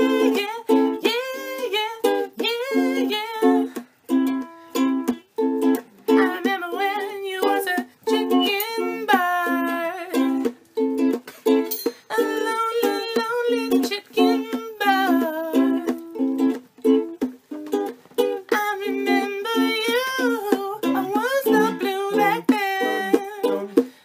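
Ukulele strummed in a steady rhythm of repeated chords, with a wordless voice carrying a melody over it at times.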